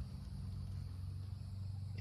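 A steady low hum, with no other distinct sound.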